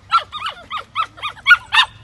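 A puppy yapping in a rapid string of short, high yelps, about ten in two seconds, the last few loudest.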